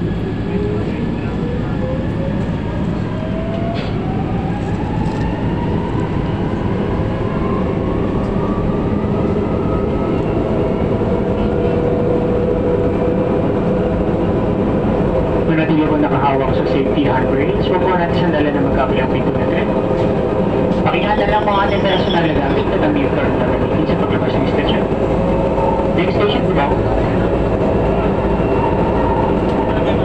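Inside an MRT Line 3 train car pulling out of a station: the motor whine rises in pitch over the first ten seconds or so as the train gathers speed, then holds steady over the continuous rumble of the wheels on the track.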